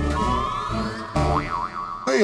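Comedic background music with a beat, overlaid by a rising sliding tone in the first second and then a wobbling, boing-like pitch effect.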